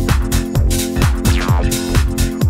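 Minimal house music from a DJ mix: a steady four-on-the-floor kick drum at about two beats a second over a sustained bassline and synth tones, with hi-hats between the kicks.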